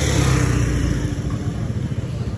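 A road vehicle's engine passing close by on the street, loudest in the first second and then easing off.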